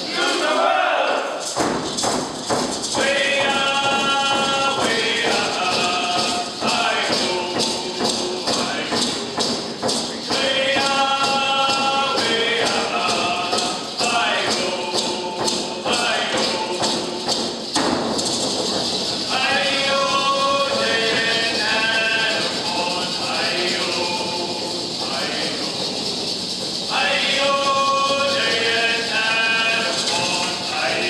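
Voices singing a Ts'msyen dance song to a steady beat on hand-held frame drums. The drumbeat comes in about a second and a half in.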